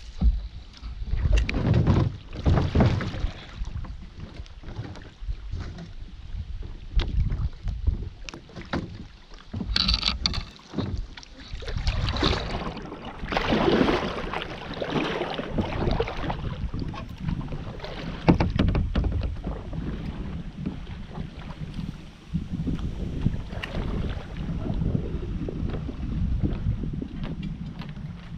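Kayak moving on a calm river: irregular water splashes and knocks against the plastic hull, with gusts of wind rumbling on the microphone.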